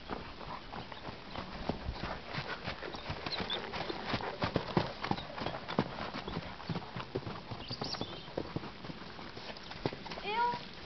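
A horse's hooves striking the sand arena footing in an uneven run of hoofbeats, loudest about halfway through. A few short bird chirps can be heard now and then.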